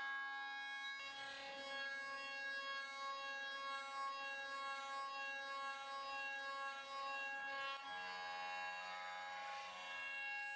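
Soft background music of sustained, held chords, changing about a second in and again near the end.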